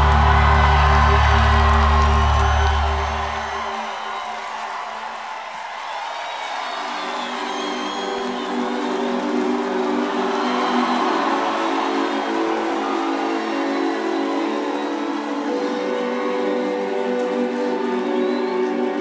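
A live rock band's held low bass chord rings and cuts off suddenly about four seconds in, leaving a crowd cheering and whooping. A few seconds later steady, sustained synth chords come in and hold, opening the next song.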